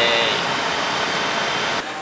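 Subway car running on the line, heard from inside as loud, steady noise from wheels and motors. A brief voiced "yay" rides over it at the very start, and the noise cuts off near the end.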